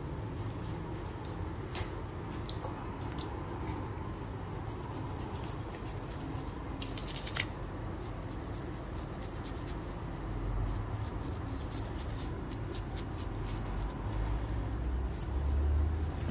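Shaving brush working thick lather over a man's face, a soft crackling, swishing sound of bristles and foam, over a low steady hum.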